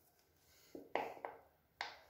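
A few faint, sharp plastic clicks and taps, four in under two seconds, as an electric toothbrush is handled and its brush head worked on the handle. The motor is not running.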